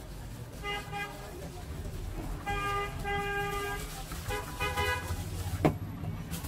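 Vehicle horns honking in street traffic over a steady low traffic rumble: a short toot about a second in, longer blasts from about two and a half to three and a half seconds, and another shortly before five seconds. A single sharp knock near the end is the loudest sound.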